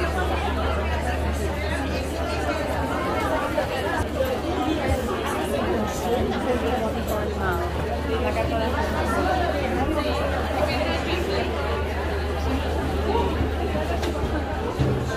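Chatter of a crowd of visitors packed into an exhibition tent: many overlapping voices with no clear words, running steadily, over a constant low hum.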